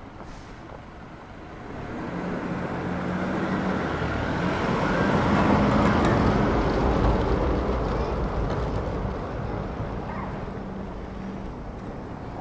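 Motorised tourist road train driving past at close range, its engine humming. It grows louder over the first few seconds, is loudest about halfway through, then fades as it moves away.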